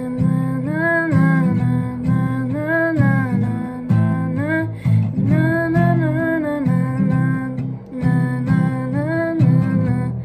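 Acoustic-electric guitar strumming chords while a voice carries a wordless melody over them in short rising and falling phrases: the melody is being matched to chords, with the key guessed as C.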